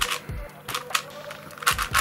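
Plastic pieces of an MF8 Unicorn twisty puzzle clicking as its layers and corners are turned by hand: a few sharp clacks, with a quick cluster near the end.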